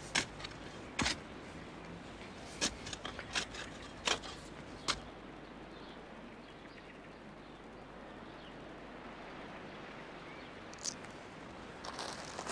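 Steel spade cutting and scraping into garden soil, a run of about seven short chops and scrapes in the first five seconds, then only a quiet outdoor background with one brief high chirp near the end.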